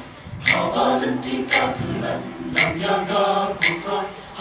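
Mixed choir of women's and men's voices singing a Khasi-language church song in parts, with crisp sibilant consonants landing about once a second.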